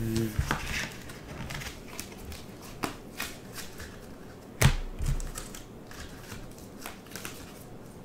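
Rigid plastic card holders and top loaders clicking and knocking against each other as a stack of cards is handled and sorted, with one louder knock about four and a half seconds in.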